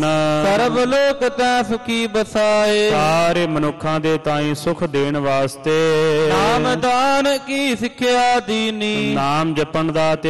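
A man's voice chanting Gurbani verses in long, sustained melodic phrases, with notes held and sliding between pitches, as in a Sikh katha recitation.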